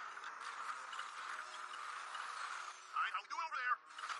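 Audio from an animated episode: a steady rushing background sound, with a character speaking briefly about three seconds in.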